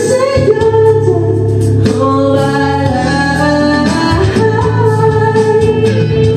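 A man singing into a handheld microphone over a backing track, holding long notes and sliding between pitches with no clear words.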